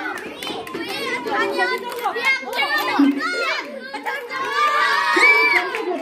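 Many children's voices shouting and chattering over one another, louder near the end, with one drawn-out high call about five seconds in.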